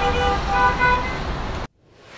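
City traffic: a hum of road noise with several car horns tooting at different pitches, cutting off abruptly shortly before the end.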